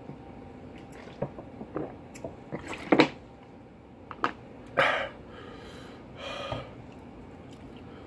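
Drinking from a plastic bottle with a screw cap: a few small clicks of the cap and bottle, a loud gulp about three seconds in, then two breaths out, the second fainter.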